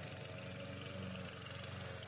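Self-propelled petrol lawn mower engine running steadily in very tall grass.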